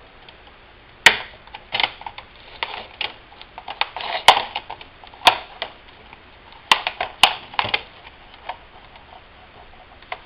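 Plastic snap clips of an Asus X44H laptop's front screen bezel popping loose as the bezel is pried away from the back lid with fingers and a plastic prying tool: a run of sharp, irregular clicks and cracks, the loudest about a second in, dying away near the end.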